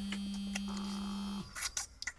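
A mobile phone buzzing steadily with an incoming call, cutting off about three-quarters of the way through as it is answered, followed by a few clicks of the phone being handled.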